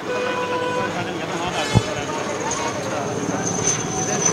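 Busy roadside noise of overlapping voices and traffic, with a vehicle horn held for about the first second and a single low thump a little under two seconds in.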